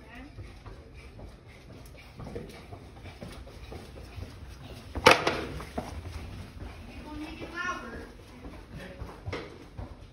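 Indistinct voices, a child's among them, with one sharp knock about five seconds in and a high rising call a couple of seconds later.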